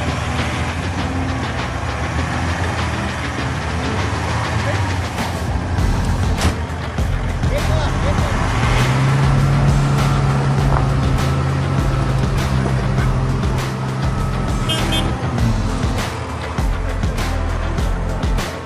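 Off-road vehicle's engine running under load as it works through deep mud. Its steady low drone grows louder from about halfway and eases near the end, with frequent sharp clicks throughout.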